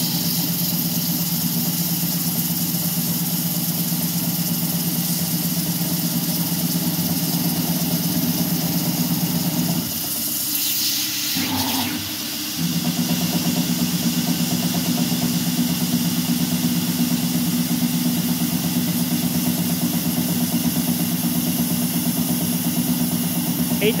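CNC gantry mill spindle running an eighth-inch two-flute end mill through aluminum at a steady pulsing hum, over the constant hiss of mist coolant spray. About ten seconds in the cutting note breaks off for about two seconds with a brief rush of noise, then resumes at a slightly higher note as the tool works the next hole.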